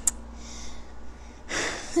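A quick breath drawn in close to a clip-on microphone, about a second and a half in, over faint room hiss.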